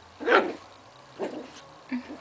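Pomeranian puppy giving three short barks in play, the first the loudest.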